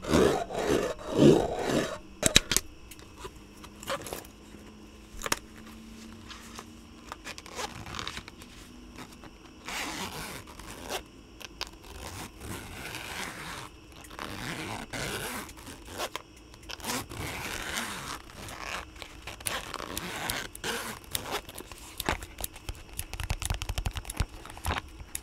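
Tools from a Japanese ear-cleaning kit scraping and scratching on and around a microphone. There are a few loud strokes in the first two seconds, then quieter irregular scratches and light clicks.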